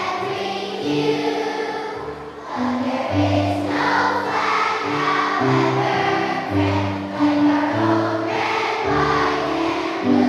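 A large group of children singing together in chorus, with instrumental accompaniment whose bass notes change every second or so.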